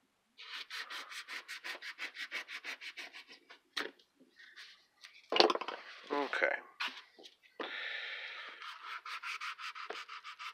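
A steel knife blade being honed on a hand-held sharpening stone: quick back-and-forth scraping strokes, about seven a second at first, then a louder grating burst with a brief squeal about halfway through, and a run of steadier rubbing strokes near the end.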